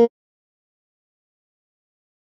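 Digital silence, broken only at the very start by the cut-off tail of a short sampled acoustic guitar preset note from FL Studio Mobile's DW Sampler.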